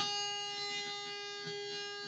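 A single electric guitar note left ringing, one held pitch slowly fading away.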